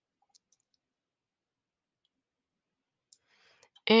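Near silence broken by a few faint computer-mouse clicks, a couple about half a second in and a few more near the end.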